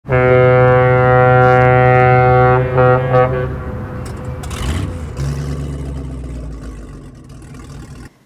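Opening sting of a news show: one loud, low, held tone for about two and a half seconds, then a few short repeats of it, a whoosh about four and a half seconds in, and a low rumble that fades away.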